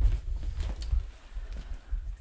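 Handling noise as a heavy power amplifier is lifted out of a cardboard box and set down on top of another cardboard box, over a low rumble.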